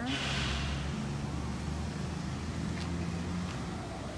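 A vehicle engine idling, a low steady hum, with a brief hiss in the first half-second.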